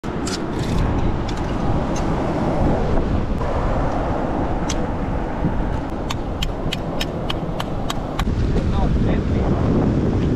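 Steady rushing wind and surf noise with sharp clicks of a knife blade striking rock and helmet urchin shells as the urchins are pried out of crevices, including a quick run of about ten taps in the second half.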